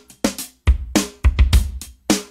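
Funky drum beat from a drum machine, kick and snare hits coming about four times a second.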